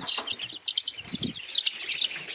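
A brood of young chicks peeping continuously, many short high peeps overlapping one another.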